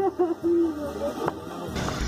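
A young woman's distressed, high-pitched voice on a recorded emergency phone call, her voice breaking off in short phrases and fading about halfway through.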